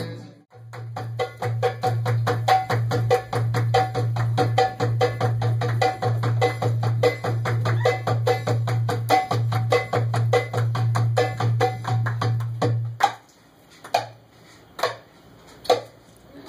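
Doumbeks (goblet drums) played in a fast, dense drum solo over a low sustained note. The drumming stops about 13 seconds in, leaving a few single strokes.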